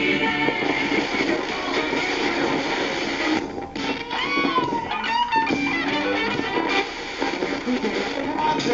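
Panasonic communications receiver playing guitar music through its speaker while being tuned down the AM band. About halfway through the music breaks up and gliding whistles sweep up and down as the dial passes between stations.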